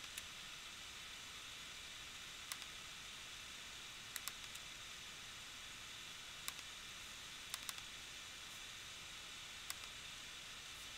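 Faint steady hiss of room tone, with soft single clicks of a computer mouse a second or more apart, clustering in twos and threes.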